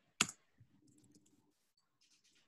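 A single sharp click from a computer keyboard keystroke, followed by very faint soft sounds.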